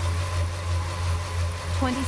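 A road bike's 700x22c tyre spinning on a three-roller trainer at a full sprint in a 53x11 gear, about 94 km/h on the computer: a steady low hum that pulses about three times a second. A synthesized voice calls out "20" near the end.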